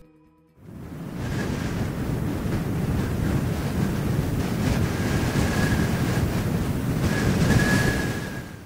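Wind blowing across the microphone outdoors: a steady rushing noise that fades in about half a second in, with a faint thin whistle that grows clearer near the end.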